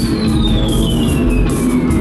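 Live rock band playing electric guitar, bass guitar and drums. A high electronic tone slides slowly and steadily down in pitch through the passage.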